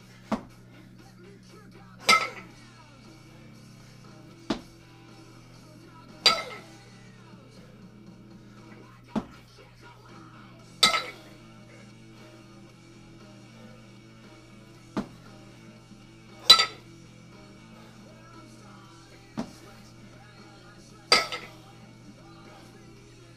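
A pair of 12 kg kettlebells clinking together on each double jerk rep: a loud, ringing metallic clink every four to five seconds, each one coming about two seconds after a lighter click. Faint music and a steady low hum play underneath.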